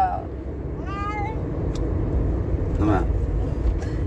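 Steady low road-and-engine rumble inside a moving car's cabin. About a second in comes a short pitched vocal sound that rises and falls, and a brief spoken word follows near three seconds in.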